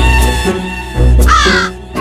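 Background music score with heavy low drum hits at the start and about a second in, under a held tone. Just past the middle comes a short, harsh, caw-like sound effect.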